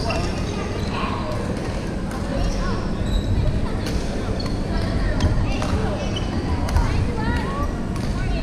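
Badminton rackets striking a shuttlecock in a rally, a handful of sharp hits, with sneakers squeaking on the wooden sports floor. Background voices chatter across the large hall.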